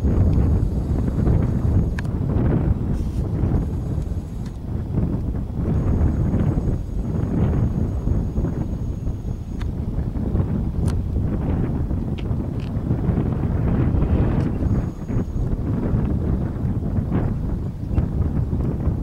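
Gusty wind buffeting the microphone: a loud, rough low rumble that swells and eases with the gusts.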